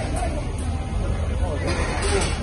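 Coach bus's diesel engine idling close by, a steady low rumble, under the chatter of a crowd.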